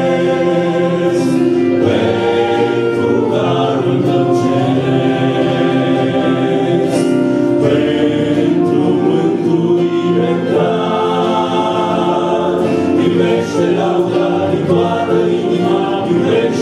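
A choir singing a Christian hymn in sustained chords.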